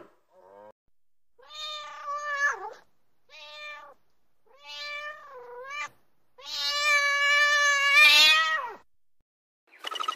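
Domestic cat meowing: a faint short call, then four meows with silent gaps between them, the last one the longest and loudest.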